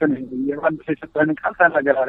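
Speech only: one voice narrating in quick phrases.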